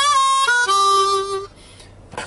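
Blues harp (harmonica) playing a short melismatic phrase: notes sliding and bending into one another, ending on a held lower note that stops about one and a half seconds in.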